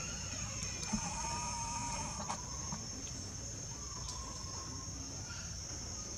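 A drawn-out animal call held at one pitch, heard from about a second in and again more briefly near the four-second mark, over a steady high-pitched insect drone.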